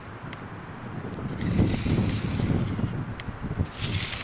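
Wind buffeting the microphone: a gusty low rumble that builds about a second and a half in, with a hiss over it.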